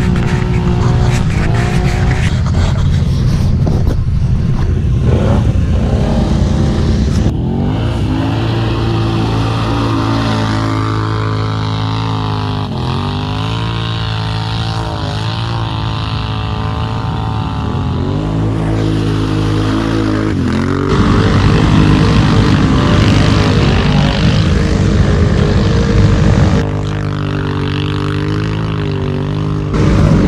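ATV engine idling close by, with the engine note dropping and rising again in places and its level stepping up and down a few times.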